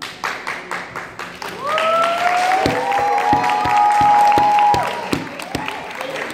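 Audience applauding, with loud hand claps close by. A single long drawn-out cheer from one person rises over the clapping in the middle and stops near five seconds.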